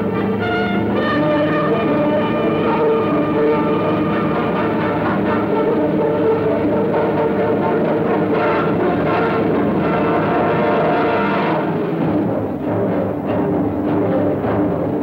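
Orchestral film score with sustained brass chords over timpani. About twelve seconds in the upper parts drop away and low drum strokes come through.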